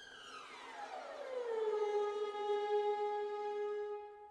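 Second-violin section playing a glissando that slides down two octaves over about a second and a half, then holds the low note, which fades out near the end.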